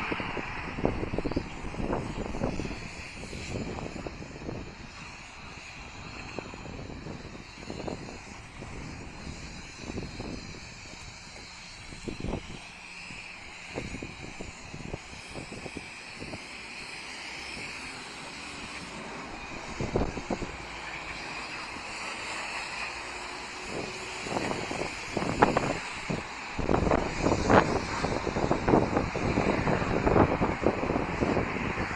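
City street traffic: a steady wash of car engines and tyres from vehicles passing on the road, growing louder and more uneven with short low thumps in the last few seconds.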